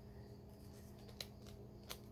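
Faint handling of a small paper-wrapped soap sample package: two light ticks, about a second in and again near the end, over a steady low hum.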